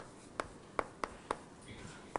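Chalk writing on a blackboard: a run of sharp taps, about two or three a second, with a faint scratch near the end.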